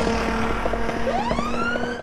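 Rushing wind and road noise from moving fast along a roadside, with a car passing, and a few light ticks. About halfway through, a smooth wail starts and climbs steadily in pitch.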